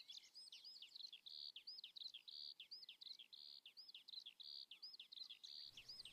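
Faint background birdsong: quick high chirps, about two a second, with short steady high notes in between.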